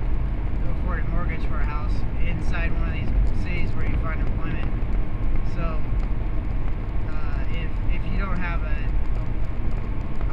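Steady low rumble of a car's road and engine noise, heard from inside the cabin while it drives.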